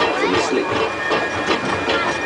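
Severn Lamb park train running along its track: a steady mechanical rattle with a faint high whine, under passengers' chatter.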